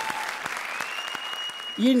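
Studio audience applauding, the clapping slowly dying away.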